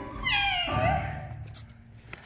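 A person's voice sliding down in pitch over about half a second as the ensemble singing breaks off, then a short rising-and-falling vocal sound, fading to quiet.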